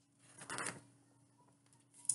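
A paperback picture book's page being turned: one short paper rustle about half a second in.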